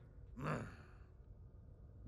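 A man's short, breathy "mm", a sigh-like grunt about half a second in.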